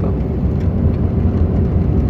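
Steady low rumble of a car driving on a gravel road, heard from inside the cabin: tyre and road noise with the engine running underneath.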